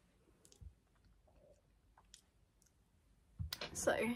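A few faint clicks from handling a smartphone as it is picked up, then a louder knock near the end.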